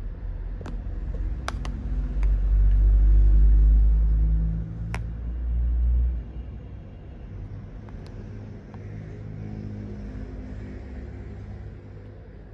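A motor vehicle's low engine rumble that swells about two seconds in, is loudest for a couple of seconds and fades away by about six seconds, with a few sharp clicks. A quieter low hum remains after it fades.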